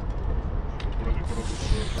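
Aerosol spray-paint can hissing as a line is sprayed onto a wall, starting a little over halfway through, over a steady low rumble.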